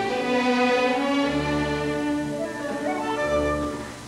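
Orchestra playing classical ballet music, the violins carrying the melody over sustained low string notes; the phrase softens near the end.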